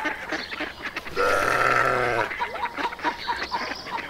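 Farm animal sounds: one drawn-out, wavering animal call about a second long, starting about a second in, with short repeated chirps before and after it.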